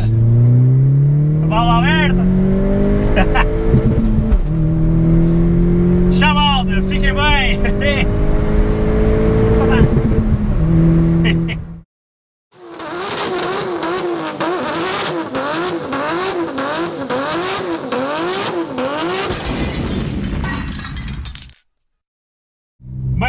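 Opel Corsa OPC 1.6 turbo four-cylinder under hard acceleration, heard from inside the cabin with its exhaust valve open. The engine note rises for about four seconds, drops at an upshift, climbs again to near the ten-second mark, then runs steady before cutting off about halfway through. After a short break a different, rhythmic sound runs almost to the end.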